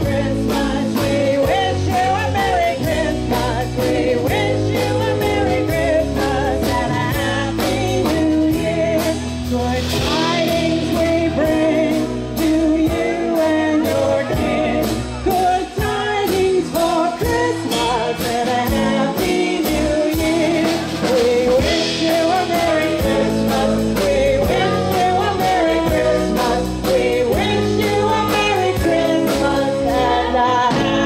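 Live band music with a woman singing lead into a microphone over a steady drum beat.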